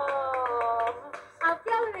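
A voice holds one long drawn-out note that slowly falls in pitch and breaks off about a second in. It is followed by hand claps and short bits of voice. It is heard through a television's speaker.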